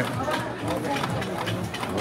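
Background chatter at a casino table game, with light scattered clicks of gaming chips and cards being handled on the felt.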